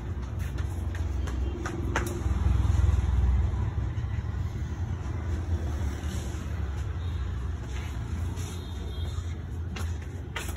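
Steady low background rumble, swelling for about a second a few seconds in, with a single short click about two seconds in.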